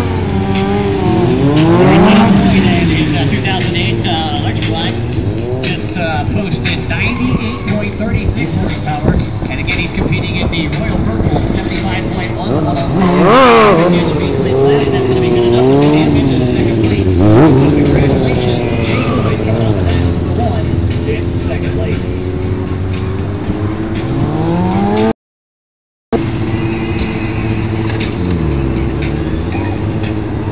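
Sport motorcycle engines revving up and down over and over as riders pull wheelies and stunts, the pitch rising and falling with each blip of the throttle. The sound cuts out completely for about a second some five seconds before the end.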